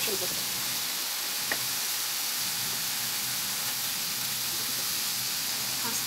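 Strips of liver frying in a hot pan with oil, garlic and spices: a steady sizzle, with one small tick about one and a half seconds in.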